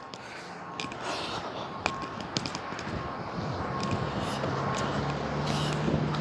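Outdoor street traffic noise with scattered light clicks, and a steady low hum that comes in about four seconds in and grows louder toward the end.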